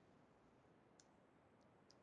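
Near silence: faint room tone with three small, faint clicks, the first about a second in and two more near the end.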